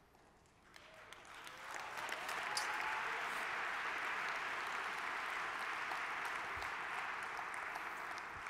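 Audience applause that starts about a second in, swells over the next second, then carries on steadily.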